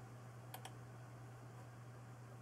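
Near silence with a steady low hum, broken once about half a second in by a short double click at the computer, the keystroke or button press that confirms the typed panel height.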